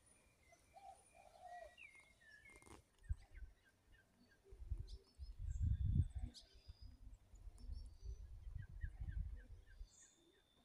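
Small birds chirping and calling, short high calls scattered all through, with a few lower calls near the start. Low rumbles on the microphone are the loudest sound, mainly in the middle and toward the end.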